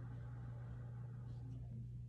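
A steady low hum with faint room noise, and nothing else clearly heard.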